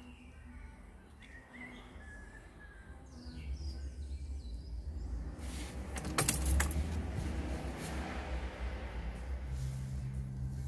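A low, steady background rumble that grows louder after about three seconds, with faint high chirps in the first few seconds and a brief jangling clatter about six seconds in.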